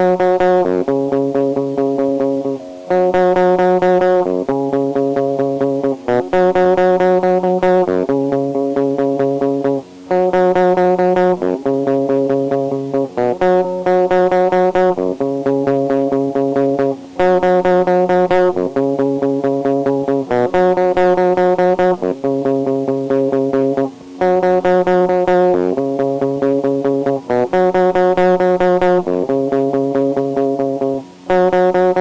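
Guitar music: a short riff of sustained guitar chords over a bass line, changing about once a second and repeating every few seconds, with brief gaps between phrases.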